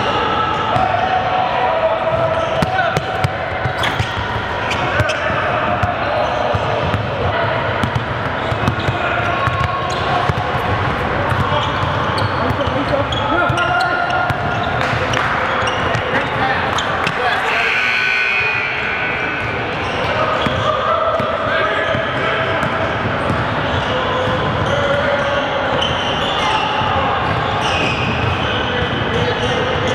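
Live basketball scrimmage sound: a ball bouncing on a hardwood gym floor with repeated sharp thuds, under continuous overlapping voices of players and onlookers calling out in a large gym.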